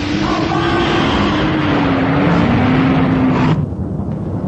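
Loud, steady roaring rumble with a low drone that sags slowly in pitch: a science-fiction soundtrack effect of fire and destruction. It cuts off suddenly about three and a half seconds in.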